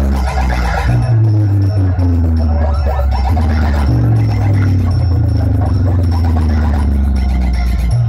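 Loud electronic music played through a tall stack of DJ speaker cabinets, with deep, sustained bass notes under a repeating melody.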